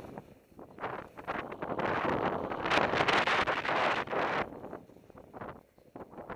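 Wind rushing over a moving camera's microphone, mixed with the hiss and spray of snow under a rider descending through deep powder. It comes in uneven surges, loudest and most sustained in the middle, and dies down near the end.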